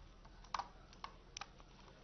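Faint keystrokes on a computer keyboard: a few scattered key presses as text is typed into a list.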